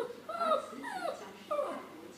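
Small white dog whining: four short, high whimpering yips in quick succession, each dropping in pitch.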